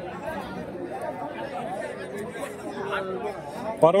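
Crowd chatter: many people talking at once, overlapping voices at a steady moderate level. A close man's voice comes in loud just before the end.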